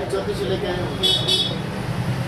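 A vehicle horn sounds twice in quick succession about a second in, over steady traffic noise and background voices of a busy street.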